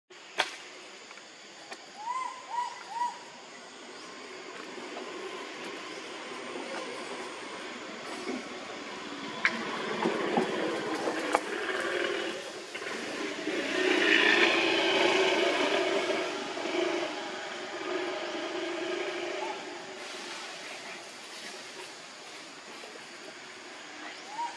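Outdoor ambience with three short, high, arching calls about two to three seconds in, a few sharp clicks, and a louder swell of mixed noise in the middle that builds and fades over several seconds.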